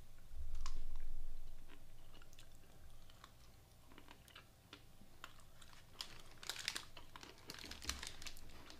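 Close-miked chewing of a chewy salted caramel keto bar, with soft mouth and teeth clicks. A low thump comes about half a second in, and a quick run of sharper crackly clicks comes near the end.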